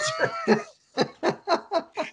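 Men laughing. It opens with one drawn-out laugh that swoops in pitch, breaks off briefly, then goes into a run of quick, rhythmic "ha-ha" pulses, about four or five a second.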